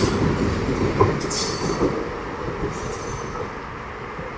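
Suburban electric multiple-unit local train rolling away past the platform, its wheel and rail noise fading as the last coaches go by. Three short high-pitched wheel squeals: one at the start, one at about a second and a half and one near three seconds.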